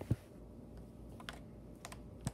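A soft thump, then a few light, scattered plastic clicks and taps as a small black plastic stick is fumbled against the side of a laptop while being pushed toward a port.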